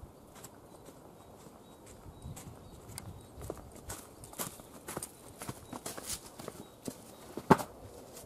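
Footsteps coming closer along a garden path, faint at first and getting louder, with a sharper knock near the end.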